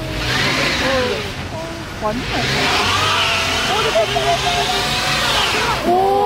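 A compact minivan stuck in snow, its engine revving and its wheels spinning on packed snow. There are two long spells of revving and spinning: one over the first second and a half, and another from about two seconds until near the end.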